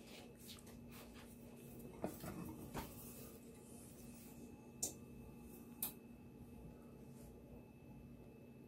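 Faint rustling of shredded cheese being sprinkled by hand onto a pizza, with a few light clicks, two of them sharper about five and six seconds in, over a faint steady hum.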